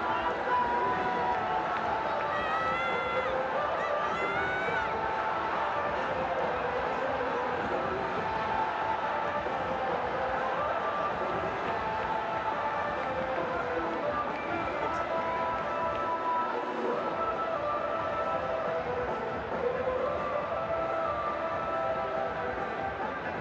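Large stadium crowd cheering and shouting, with music playing over the ground's loudspeakers, steady throughout.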